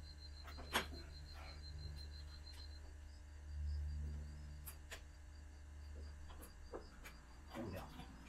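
Faint metallic clicks and clinks of hand-fitted hitch hardware as a Stabilworks telescoping stabilizer link is installed on a Kubota BX1850's three-point hitch: one sharp click about a second in and a few more in the second half, over a low steady hum.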